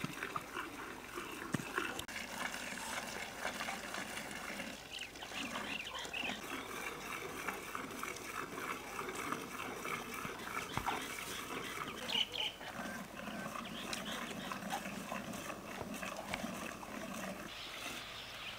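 Farmyard livestock sounds from cattle and calves gathered around a cow being hand-milked, with short animal calls and small knocks scattered throughout.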